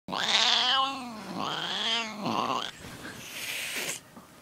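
Domestic cat yowling: three long, wavering calls, the first the loudest and falling in pitch, then a breathy noise near the end.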